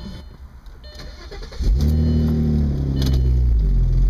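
A 2002 Audi S4's 2.7-litre twin-turbo V6 starting about a second and a half in, running briefly at a raised speed and then settling to a steady idle. The engine runs with its number 5 coil pack dead, which the owner says causes no misfire below about 3,000 rpm.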